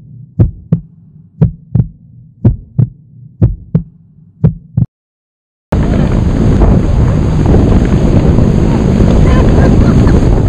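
A heartbeat sound effect: paired low thumps about once a second for about five seconds, then a moment of silence. After that come loud wind on the microphone and rushing water from a towed inflatable ride skimming the sea.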